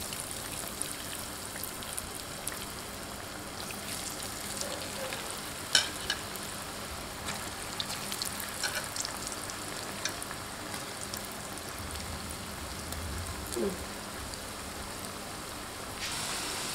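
Potato sticks deep-frying in hot oil in an aluminium pan: a steady crackling sizzle, a freshly added batch bubbling hard. A few sharp clicks stand out around the middle.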